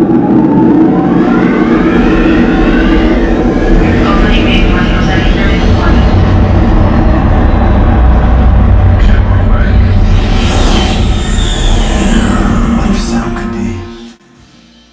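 Dolby Atmos demo soundtrack: spaceships flying past, with rising whooshes over a deep, steady bass rumble and music. It cuts off suddenly at the end.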